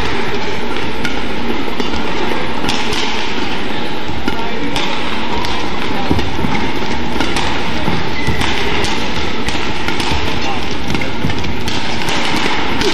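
Badminton rally: rackets striking the shuttlecock every second or two, with squeaks and thuds of footwork on the court, over a steady wash of crowd voices in a large hall.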